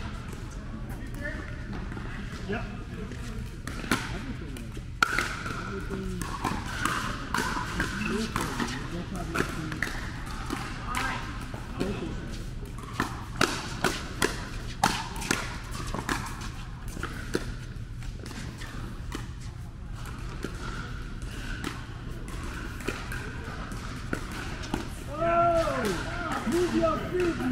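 Pickleball paddles hitting a hollow plastic ball in an indoor rally: sharp pops, with a quick run of hits about two a second around the middle, over the hum and chatter of a large hall.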